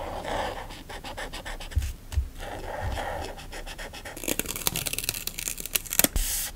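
A felt-tip marker tip dabbing and scratching on paper in many quick short strokes. About four seconds in, a crackly, hissing rustle of a clear plastic sticker sheet being handled and peeled takes over.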